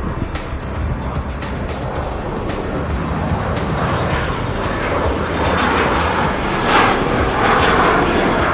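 Jet aircraft flying overhead, its engine noise swelling from about halfway through and loudest near the end, with background music underneath.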